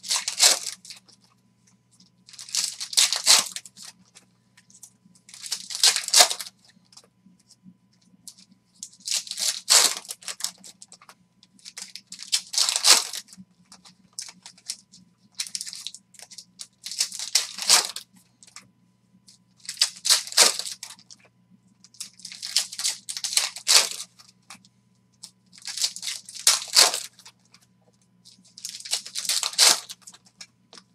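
Foil wrappers of trading-card packs being torn open and crinkled, one pack after another, in about ten short bursts roughly three seconds apart.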